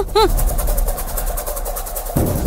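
After the last syllable of a woman's voice, a low, steady rumble with a fast, even ticking pulse over it: a TV drama's tension sound effect or background score under a dramatic pause.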